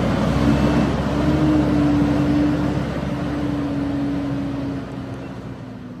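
Engine of a truck-mounted water-well drilling rig running steadily, a continuous engine noise with a steady low hum through it, easing off slightly near the end.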